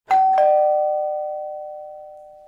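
Two-note chime: a higher note, then a lower one a quarter-second later, both ringing on and slowly fading.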